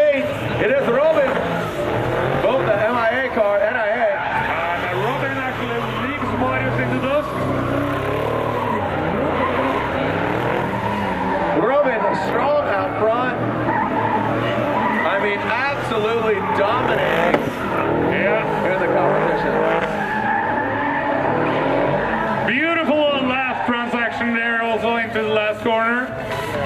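Drift cars in a tandem run, led by a Toyota Supra: engines revving up and down hard with tyres squealing and skidding as they slide sideways through the corners.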